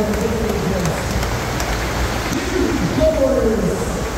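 FlowRider double sheet-wave surf machine running with no rider: a steady rush of pumped water sheeting up over the ride surface. A voice is heard faintly in the background near the end.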